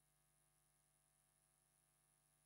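Near silence: a faint, steady electrical hum on an otherwise dead audio feed.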